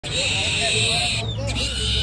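Domestic rabbit squealing while held up, in two long harsh calls with a short break between, a sound like a piglet's.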